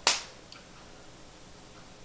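A single sharp plastic click, typical of a lipstick tube's cap being snapped on or off, followed about half a second later by a much fainter tick.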